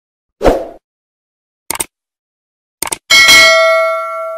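Subscribe-button animation sound effects: a dull thump, two short clicks, then a bell ding near the end that rings on in several steady tones and slowly fades.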